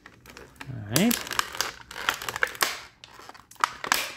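Clear plastic packaging crinkling as hands pull and unwrap it, a quick irregular run of sharp crackles after about a second.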